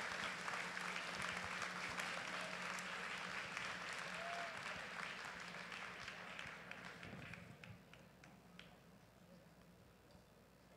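Faint audience applause, the clapping thinning out and dying away about eight seconds in.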